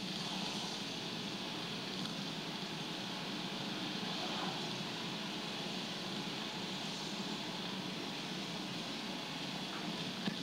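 Steady road and engine noise inside a car driving at city speed, heard from the playback of a recorded drive.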